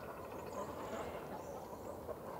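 A few brief, high bird chirps over a faint background hiss.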